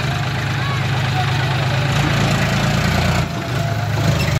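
John Deere tractor's diesel engine running steadily at low revs while reversing a loaded trailer, with a short dip in level near the end.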